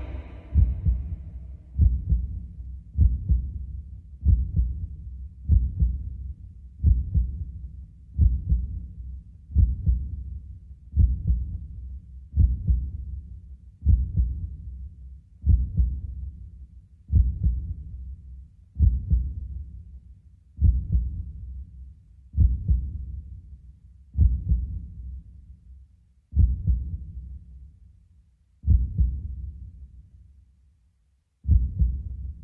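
Slow heartbeat-like low thumps, a little under one a second, growing farther apart toward the end.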